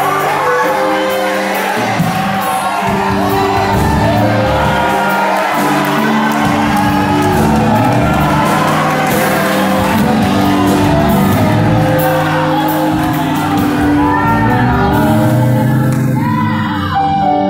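Live Brazilian gospel worship song played over a PA: amplified singing over steady instrumental backing.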